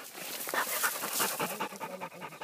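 An orange-and-white pointer dog panting fast, close by. The panting starts about half a second in.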